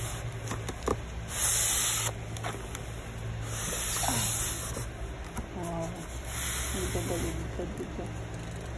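Plastic wrapping and cardboard rustling and scraping in three bursts as a boxed inkjet printer in its plastic cover is slid out of its carton.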